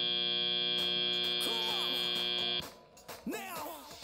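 FRC field end-of-match buzzer sounding one steady, loud, buzzy tone for about three seconds as the match clock runs out, then cutting off abruptly.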